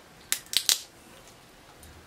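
Small paper craft pieces being handled: three quick, crisp crackles close together in the first second.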